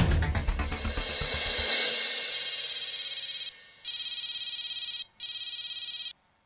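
Dramatic background music with drums fades out over the first two seconds. Then a mobile phone rings with a steady electronic ringtone, broken twice by short gaps, until the call is answered.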